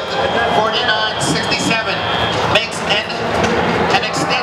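Steady loud din of a competition arena: rolling, rumbling noise from robots driving on the field mixed with crowd noise and scraps of voices.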